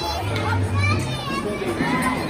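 Children's voices and people talking in a busy indoor play area, over a low steady hum.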